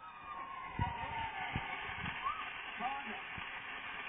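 Game-show soundtrack playing through a television's speaker: a steady crowd-like noise with voices over it, and a couple of short low thumps.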